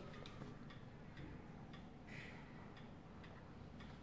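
Near-quiet room tone with faint, light ticks at irregular intervals.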